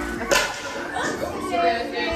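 A sharp snap, like a slap, about a third of a second in, over background music with held tones and indistinct voices.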